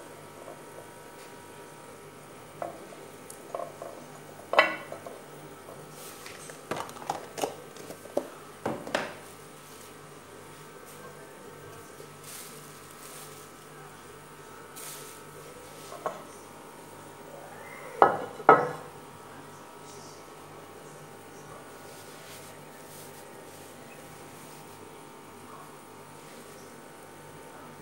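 Ceramic baking dish knocking and clattering against a stone countertop as it is handled to dust its buttered inside with flour. There is a run of light knocks in the first nine seconds, then two sharp knocks about eighteen seconds in.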